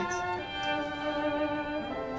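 Slow violin music with long, held bowed notes, stepping down to a slightly lower note about half a second in.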